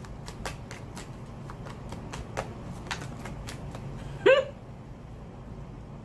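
A deck of tarot cards being shuffled by hand: a quick, irregular run of soft card clicks for about four seconds. About four seconds in comes one short rising vocal sound from the shuffler.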